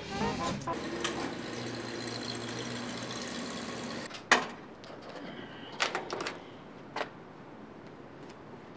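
A steady low rumble that falls away as a car door shuts with a single sharp thump about four seconds in, followed by a few lighter knocks and clicks.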